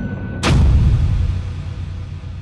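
A single deep cinematic boom, the kind of impact hit that closes a trailer: a sharp crack about half a second in, then a low rumble that slowly dies away.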